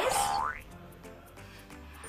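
Cartoon sound effect: a quick upward-gliding tone lasting about half a second, followed by soft background music.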